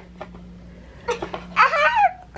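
A toddler's short fussing whine about halfway in, bending up and then down in pitch: frustration at a wooden puzzle piece that won't go in. Before it come a few faint taps of the wooden pieces on the board.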